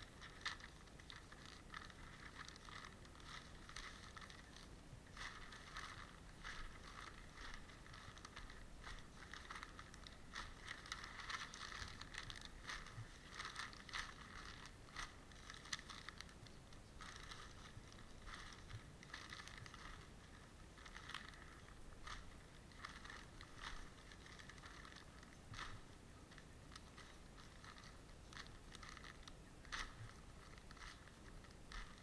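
Faint, continuous rustling and crinkling of newspaper rubbed over a muskrat pelt, scrubbing fat and flesh off the hide.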